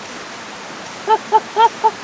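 Steady rush of a valley stream, then, about a second in, a person laughing in a run of short high-pitched bursts, about four a second.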